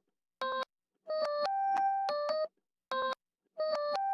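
A short synth-keyboard melody played back from a DAW, stopped and restarted several times: a brief blip, a run of notes, another blip, then the notes starting again near the end. It is being played through the Glitch 2 plug-in's reverser to hear swing notes in reverse.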